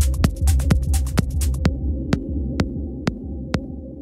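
Minimal techno in a DJ mix: a steady kick with hi-hats over a droning bass. A little before halfway the hi-hats drop out and the track thins to the bass and a kick about twice a second, slowly getting quieter.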